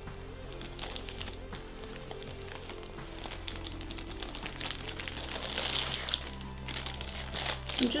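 Rustling and crinkling of a satin doll bag and the clear plastic wrap inside it as a resin ball-jointed doll body is handled, over soft background music. The rustling gets busier and louder in the last couple of seconds as the satin is folded over.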